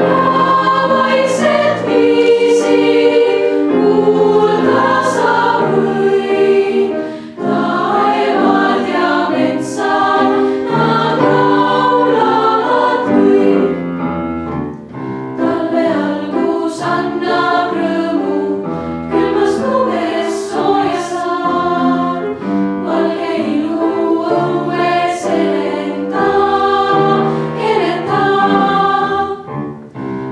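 Girls' choir singing in several parts, holding long notes together. There are short breaks between phrases about 7 and 15 seconds in.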